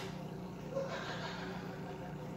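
A steady low hum with a faint even hiss that swells slightly about halfway through.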